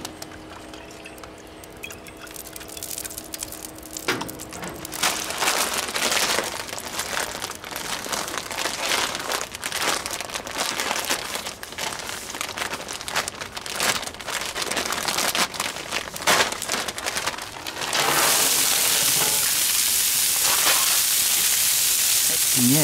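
Light irregular crackling and plastic crinkling, then about 18 s in a loud, steady sizzle starts as broccoli florets hit the hot, oiled steel of a Blackstone flat-top griddle.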